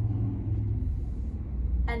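A steady low rumble with a faint hum.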